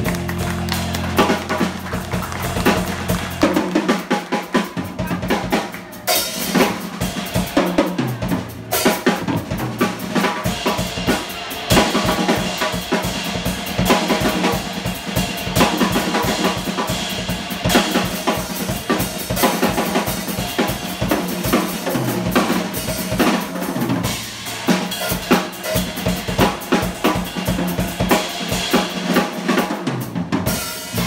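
Live instrumental trio of drum kit, electric bass and electric guitar playing, with busy drumming to the fore over held bass notes.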